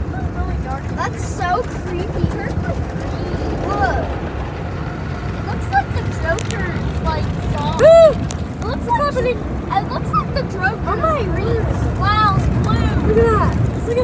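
Automatic car wash brushes and water spray heard from inside the car as a steady low rush over the bodywork, with short excited voice calls over it; the loudest call comes about eight seconds in.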